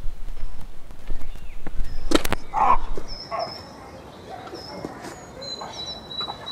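Woodland outdoor sound: a low wind rumble on the microphone for the first few seconds, a single sharp crack about two seconds in, then a few short lower calls and short high whistled bird calls through the second half.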